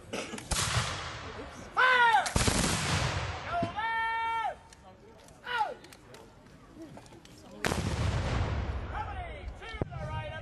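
Volleys of black-powder musket fire from a line of infantry: a ragged volley about half a second in, a louder one at about two and a half seconds, and another near eight seconds, each rolling on for about a second. Loud shouts come between the volleys.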